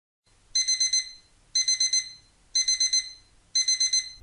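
Digital alarm-clock beeping sound effect signalling that the countdown timer has run out. It plays four bursts of four quick, high beeps, one burst a second, starting about half a second in.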